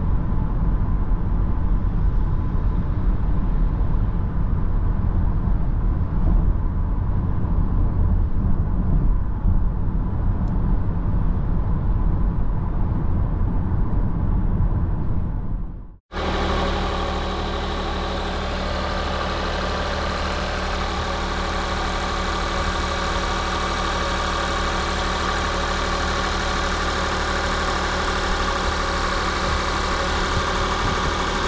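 Cabin noise of a Nissan X-Trail e-Power at highway speed, a steady low road and tyre rumble. About halfway through it cuts to the car's 1.5-litre three-cylinder VC-T petrol engine, heard close with the bonnet open, running steadily at idle.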